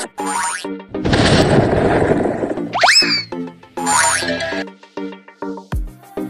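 Cartoon-style sound effects of a channel intro over upbeat music: a burst of noise, then a springy boing with gliding tones and a falling sweep. A regular beat comes in near the end.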